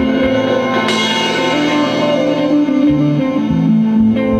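Improvised instrumental space-rock music: sustained guitar tones over changing bass notes, with a bright, hissy wash coming in about a second in.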